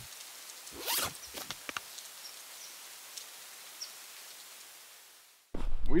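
Logo sting sound effect: a quick swish with a few rapid zipper-like ticks about a second in, then a faint hiss that slowly fades away.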